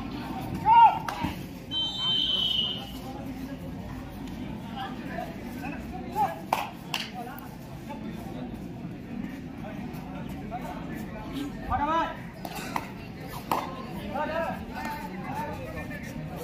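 Crowd noise around a kabaddi court: a constant murmur of spectators with scattered short shouts. A short high whistle blast comes about two seconds in, and a few sharp claps or slaps come in the middle and near the end.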